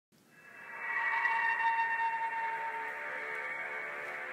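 Music intro: sustained, steady synthesizer tones that fade in over about the first second and then hold, with no voice yet.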